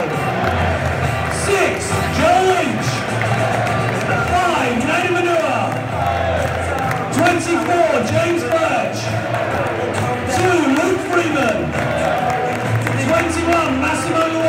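Music played over a football stadium's public-address system, with crowd noise and scattered cheering underneath.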